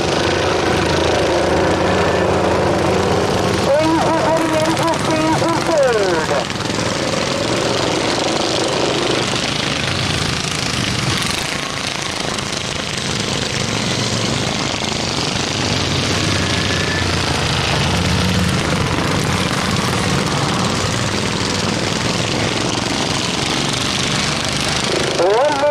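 Several racing lawn mower engines running hard as the mowers lap the track, their pitch falling as one passes close about five seconds in.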